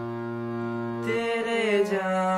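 Harmonium holding a steady chord, then moving to new notes about a second in as a young man's voice starts singing over it with a wavering vibrato.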